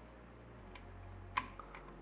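Quiet handling of wiring and plastic connectors at a 3D printer's mainboard, with one short sharp click about one and a half seconds in and a fainter tick just after.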